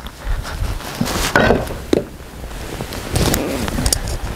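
Footsteps on wet ground, with a few scattered knocks of wood and metal.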